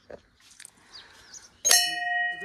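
A hanging brass temple bell struck once by hand near the end, ringing on with a clear, steady tone.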